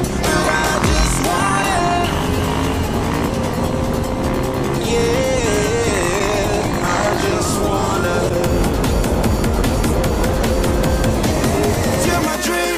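Background music with a supermoto motorcycle engine running underneath it.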